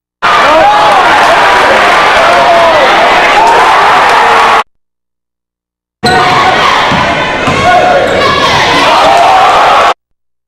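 Basketball game sound in a gym: loud crowd noise with shouting, broken by two abrupt cuts to dead silence. In the second stretch a basketball is dribbled on the hardwood court during play.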